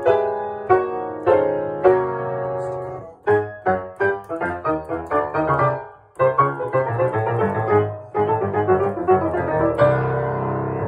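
1898 Steinway Model C grand piano, seven foot six, freshly fitted with new hammers and regulated, played by hand. Firm repeated chords come about every half second, then quicker runs of notes, a brief break about six seconds in, and then busier playing with full bass.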